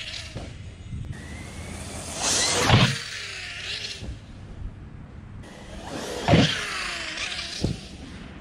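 Electric motors of large brushless RC cars whining loudly as the cars pass close twice, about two and six seconds in, each whine falling in pitch as the car moves off. A sharp knock near the end.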